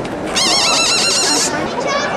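A whinny: one high, quavering neigh lasting about a second, starting shortly after the start.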